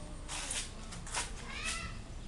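A short animal call near the end, over a few brief scuffing noises.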